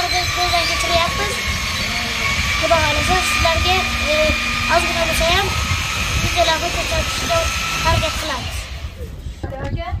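A young child's high voice performing a long run of quick, short phrases, with a steady high tone running behind it; the voice stops about nine seconds in.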